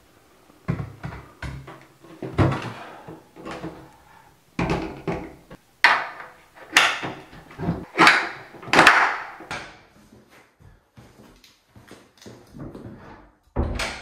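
A heavy old solid-wood door being handled and fitted into its frame: an irregular series of wooden knocks, thumps and scrapes, busiest in the middle and fainter toward the end.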